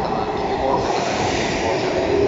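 A JR 185-series electric train pulling into the platform and running past at low speed, a steady, even noise of wheels on the rails.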